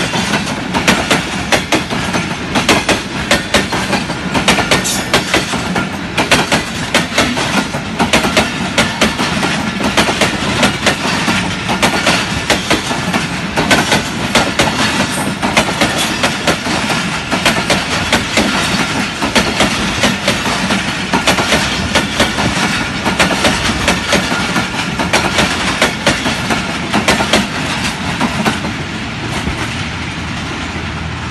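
Passenger coaches of an express train rolling past close by, their wheels clicking rapidly and continuously over the rail joints. The clatter thins out near the end as the last coach goes by.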